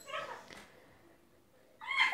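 Faint high-pitched calls, twice: one at the start that fades within about half a second, and another that rises in near the end, with near silence between.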